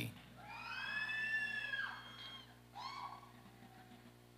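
Someone in the audience cheering for a graduate: a long high-pitched call lasting about a second and a half, then a shorter falling shout about three seconds in.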